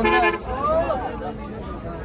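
A vehicle horn honks once, briefly, at the start, over the steady chatter of a crowd of men's voices.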